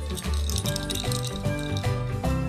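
Upbeat background music, with a small plastic cage toy rattling as a caique grabs and shakes it.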